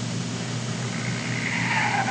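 Felt-tip Sharpie marker drawing on paper, a faint scratchy squeak that grows louder in the second half, over a steady low room hum.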